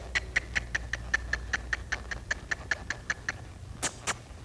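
A rider clucking to a horse to urge it on: a rapid, even run of tongue clicks, about six a second, for some three seconds, with two louder clicks near the end.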